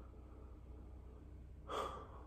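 A man's short intake of breath through the open mouth near the end, otherwise quiet room tone.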